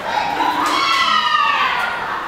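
A group of children's voices, with one high-pitched exclamation about half a second in that slides down in pitch over a little more than a second.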